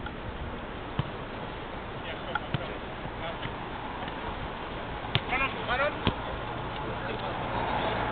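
Five-a-side football in play: a few sharp ball kicks and distant players' calls over a steady background hiss.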